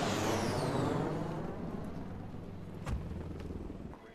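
A car passing by, its sound sweeping down in pitch as it goes past over the first second or two and then fading. A single sharp thump comes about three seconds in.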